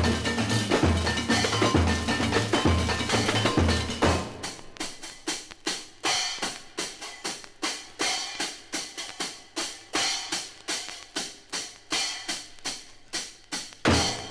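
Samba bateria percussion on a 1962 record: the full ensemble playing over a deep, repeating bass-drum pulse, then about four seconds in the bass drops out and a percussion solo carries on with sparse, sharp drum strikes, roughly two to three a second.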